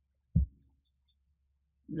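A single short, dull knock about half a second in, with a few faint high ticks just after it; a man's voice begins right at the end.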